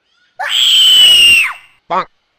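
A single loud, drawn-out cat meow lasting about a second, high-pitched and falling slightly in pitch, with a brief second sound right at the end.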